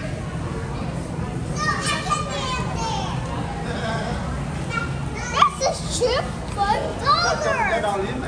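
Young children's high-pitched voices chattering and calling out, loudest a little after five seconds and again about seven seconds in, over a steady low background hum.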